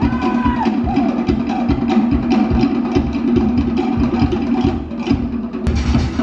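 Fast Polynesian drumming for a Tahitian dance. Wooden log drums beat a rapid, even rhythm over deeper drums. The sound changes abruptly near the end.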